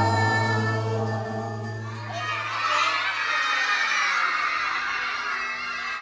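Music ending on a held final chord over the first two seconds, then a group of young children shouting and cheering together.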